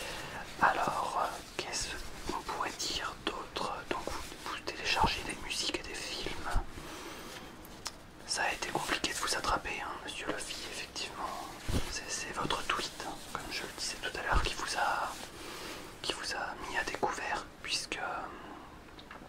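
A man whispering in French in short phrases, with brief pauses between them.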